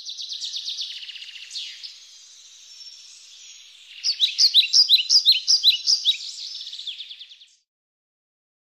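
Songbird singing: quick, high chirping trills, then louder, sharper chirps repeated in a fast series from about four seconds in, stopping shortly before the end.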